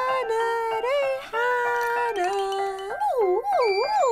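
A high wordless voice sung through a megaphone, holding notes and sliding up and down in pitch, with wide swoops and a long falling slide near the end. Soft background music runs under it.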